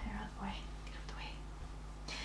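Quiet, half-whispered speech from a woman during the first second or so, then room tone with a low steady hum.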